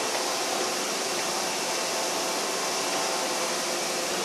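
Steady, even fan-like noise with a faint hum, from running machinery in a machine shop.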